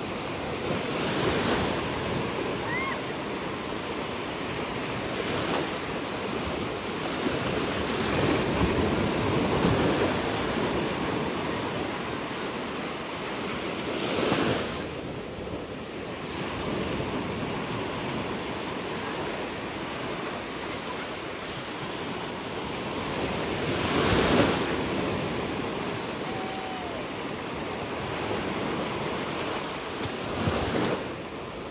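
A steady wash of sea waves and wind, with gusts of wind hitting the microphone several times, the strongest about halfway through and again near the end.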